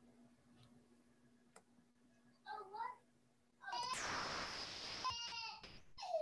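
A short high-pitched gliding cry a little over two seconds in, then a louder, longer high-pitched cry lasting about two seconds over a rushing noise, heard through a video-call feed.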